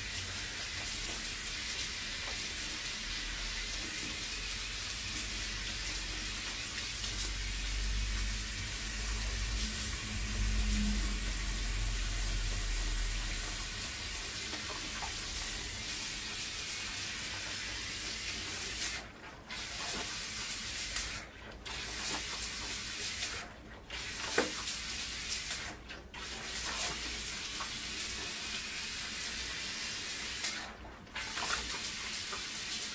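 Water spraying from a salon shampoo-basin hand sprayer onto hair and into the basin, rinsing out hair dye: a steady hiss that, from about two-thirds of the way in, cuts off briefly four times.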